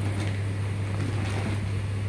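Steady low electrical hum from a microphone and amplifier setup, over a faint background hiss, with a few light clicks.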